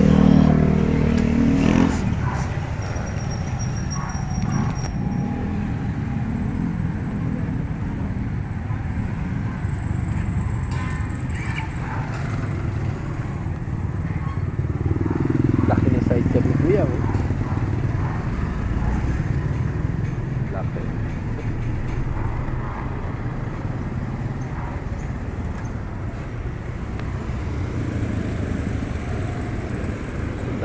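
Street traffic made up mostly of motorcycle-sidecar tricycle engines, with a steady low rumble throughout. One engine passes and fades out about two seconds in, and another passes rising in pitch around the middle.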